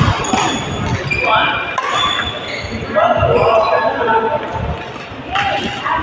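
Badminton rally: a few sharp racket strikes on the shuttlecock, short high squeaks of shoes on the court, and players' voices, all echoing in a large sports hall.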